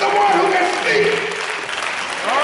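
A preacher's voice over a congregation applauding.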